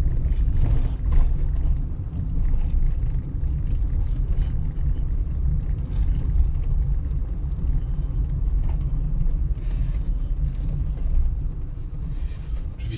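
Steady low rumble of a car's engine and tyres heard from inside the cabin, rolling slowly over a rough, patched asphalt lane, with faint small knocks from the bumps.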